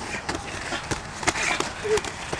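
A laugh, then faint voices and a few short knocks and scuffs from a gloved boxing exchange on dirt: punches landing and feet shuffling.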